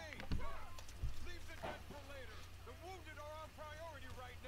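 Faint dialogue from an anime episode playing in the background, over a steady low hum, with two short dull thumps in the first second.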